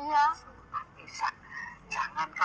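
A man's voice: a short, drawn-out, wavering vocal exclamation right at the start, followed by a few brief spoken syllables.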